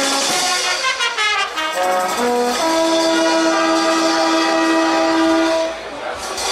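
Brass band of trumpets, trombones and sousaphones playing: a few short notes and a quick run, then a long chord held for about three seconds that cuts off just before the end.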